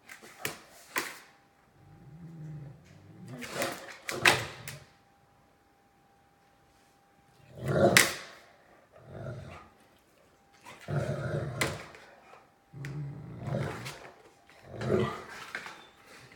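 A black Great Dane vocalizing at another dog over a bone in a string of separate bursts: low, drawn-out 'talking' sounds and a few short sharp barks, with gaps between them.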